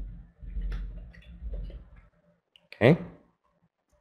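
A few light computer keyboard and mouse clicks, spaced irregularly over a low rumble, as a file name is typed and saved.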